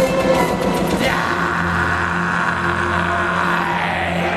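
Live symphonic black metal band, heard from the crowd, ending a song: the full band plays for about a second, then stops, leaving a low chord held steady.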